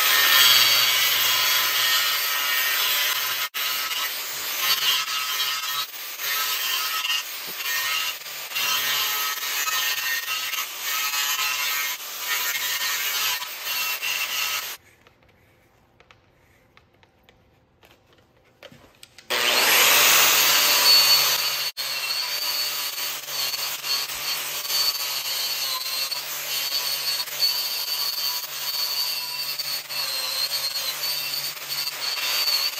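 Angle grinder with an abrasive disc grinding out an old, incompletely penetrated weld seam on an aluminum tank, running steadily against the metal. It stops for about four seconds midway, then starts again and grinds on.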